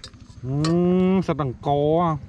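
A long, low, drawn-out vocal call, then a second shorter one, each held at a steady pitch.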